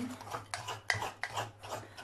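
A spatula stirring thick cake batter in a glass mixing bowl: a quick run of short scraping strokes against the glass, about three or four a second.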